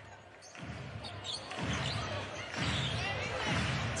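Murmur of a crowd in a basketball arena, with indistinct voices, growing louder about half a second in.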